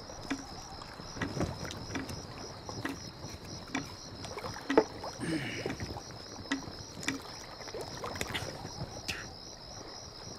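Night-time riverside ambience: water lapping against moored wooden boats, with scattered small knocks and clicks, one sharper knock a little before the middle. A steady, evenly pulsing high chirp of insects runs underneath.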